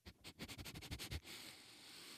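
A man's quick, faint breaths and sniffs through the nose, about ten short ones in the first second, then one longer, softer breath.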